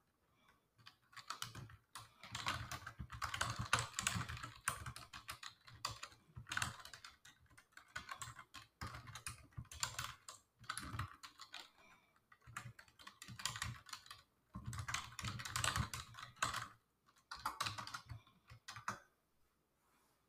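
Computer keyboard being typed on in quick runs of key clicks with short pauses between them, stopping about a second before the end.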